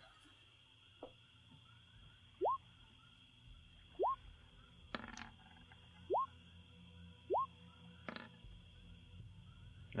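Four short rising 'bloop' notification tones from the computer, spaced a second or two apart, each one arriving as a player's perception roll is posted to the chat. Between them come a few faint clicks and a steady faint high drone.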